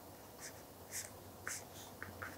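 Faint scratching of pens writing on notebook paper, a few short strokes spread across the moment.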